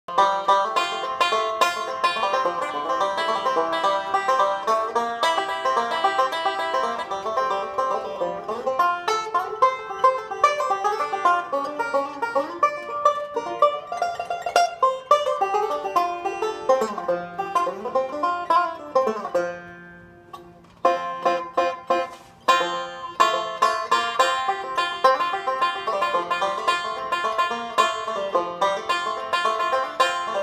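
Gibson flathead Style 3 resonator banjo picked rapidly in a continuous run of bright notes. A few notes slide in pitch just before a short pause about twenty seconds in, then the picking carries on.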